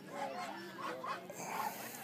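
Jack Russell terrier puppies giving several short, high-pitched whines while being petted.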